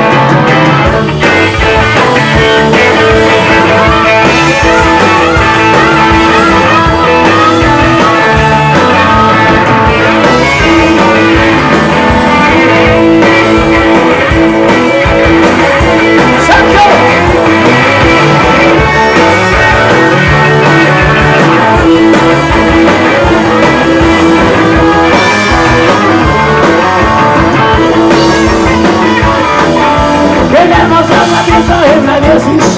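Live rock and roll band playing loudly: electric guitar over bass and drums, with no sung words.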